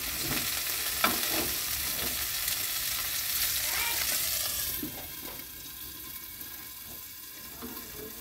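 Fish pieces shallow-frying in hot oil in a black pan, sizzling steadily. About five seconds in, the sizzle drops much quieter as a glass lid goes onto the pan. A single knock comes about a second in.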